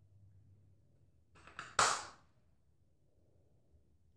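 Plastic jumbo perm rod being fastened: two small clicks, then one sharp snap just under two seconds in that dies away quickly.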